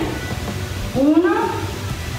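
A woman counting a single repetition aloud, "uno", over quiet background music.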